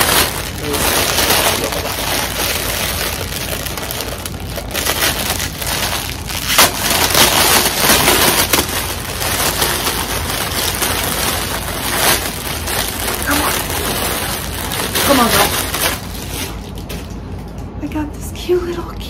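Crinkly packaging rustling and crackling loudly without pause as a large plush toy is unwrapped and pulled out of it.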